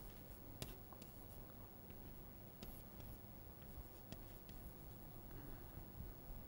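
Chalk writing on a blackboard: faint scratches and irregular short taps as letters and symbols are formed.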